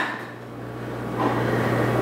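A steady low electrical hum under room noise, with a faint rustling haze that builds from about a second in.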